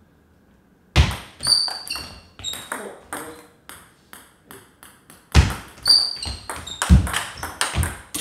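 Table tennis rally starting about a second in: a serve and forehand drives, the ball clicking off rubber paddles and bouncing on the table with short ringing pings. Several strokes land much louder than the rest.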